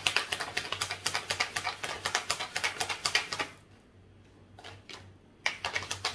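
Tarot cards being shuffled by hand: a quick run of card clicks and flicks for about three and a half seconds, a short pause, then shuffling again near the end.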